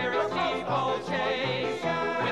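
A small group of men singing in harmony, several voices at once over a low part that moves in short, even steps.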